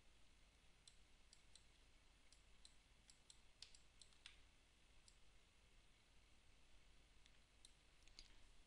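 Faint computer mouse clicks, a dozen or so scattered irregularly over near silence.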